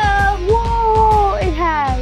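A child's long, wavering, excited cry with no words, high in pitch and sliding down near the end, over background music with a steady beat.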